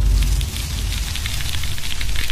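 A steady crackling, hissing noise starts suddenly, over a low rumble.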